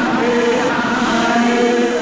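Music: chanted vocals holding long, steady notes over a dense backing, in the style of Ojibwe powwow singing.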